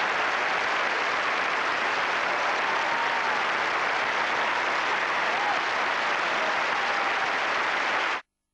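A large audience applauding, a dense and steady wash of clapping that holds at one level throughout. A few faint calls rise above it in the middle.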